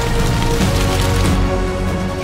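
Dramatic TV background score: sustained low notes and chords over a steady low pulse. Under it, a crackling rustle of dry leaves being disturbed.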